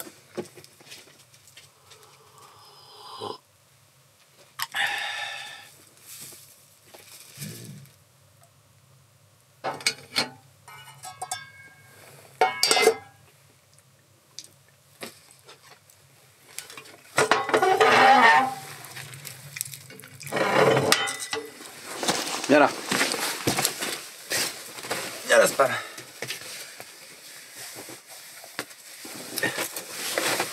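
Small handling sounds: a metal camping cup clinks as it is set down and a plastic bag rustles. In the second half there is a louder stretch of close vocal sounds without clear words.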